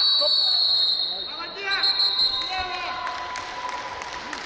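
A referee's whistle blown in one long, steady, shrill blast of about two seconds to end the wrestling bout, with shouts and a few thuds on the mat around it.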